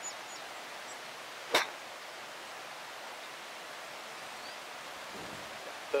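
One crisp click of a golf wedge striking the ball on a short pitch shot, about a second and a half in, over a steady outdoor hiss.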